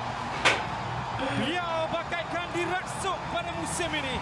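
Football match broadcast commentary: a commentator's voice talking over the goal replay, with one sharp knock about half a second in.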